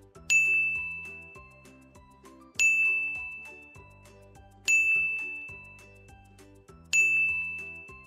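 A bright chime sounds four times, about two seconds apart, each ding fading out, over soft background music. It is a cue sound pacing the syllables for children to repeat aloud.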